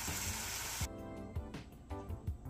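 Shrimp sizzling in a frying pan, cut off abruptly just under a second in, followed by background music.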